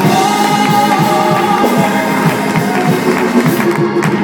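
Live gospel singing: three women's voices in harmony on long held notes, over organ and drum accompaniment with a steady beat.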